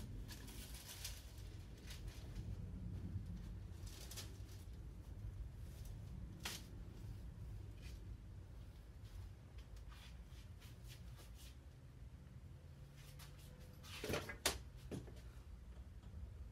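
Glued wooden strips being handled and pressed into a bending jig: faint rubbing and a few scattered knocks, with a sharper clatter near the end, over a low steady hum.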